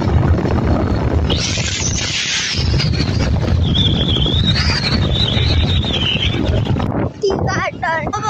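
Wind buffeting the microphone of a camera carried on a moving motorcycle, with voices heard faintly under it. A high wavering tone runs through the middle, and clearer voices come in near the end.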